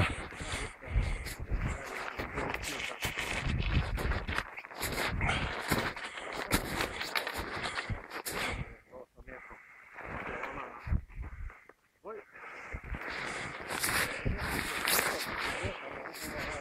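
Footsteps wading through knee-deep snow: an irregular run of crunching, swishing steps, quieter and broken for a few seconds past the middle.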